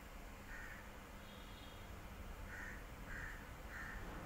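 A crow cawing faintly in the background: one caw about half a second in, then a run of three caws near the end, over a low steady hum.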